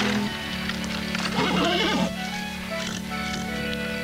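Background music of held, sustained notes, with a horse giving one short, rough call about a second and a half in.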